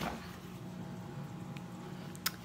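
Faint steady hum of room tone, with a single light click about one and a half seconds in.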